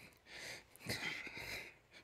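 A person's faint breathing close to the microphone: two soft breaths, one about half a second in and a longer one from about a second in.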